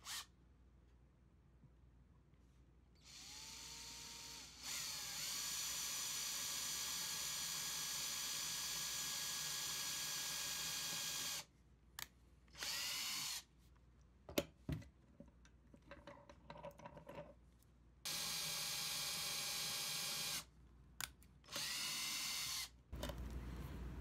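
Cordless drill drilling into a wooden dowel: two long runs, each rising in pitch as the motor spins up, then holding a steady whine, with short bursts and a few clicks in between as the two holes are made.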